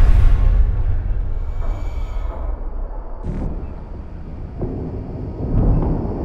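Ominous sci-fi film score sound design: a deep rumble that hits hard and slowly fades, with a brief high hiss about three seconds in. The rumble swells again near the end.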